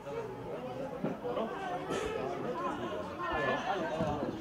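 Background chatter of several voices around a football pitch, players and spectators talking and calling out, with one voice standing out about three and a half seconds in.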